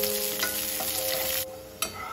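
Cashews and raisins sizzling as they fry in a nonstick pan, stirred with a wooden spatula, with small scraping clicks. The sizzle cuts off suddenly about three-quarters of the way through, and a single sharp click follows near the end.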